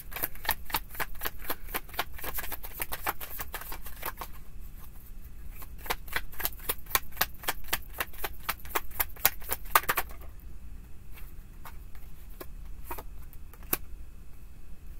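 A deck of tarot cards being shuffled by hand, a rapid patter of card clicks for about ten seconds, then slowing to a few scattered taps.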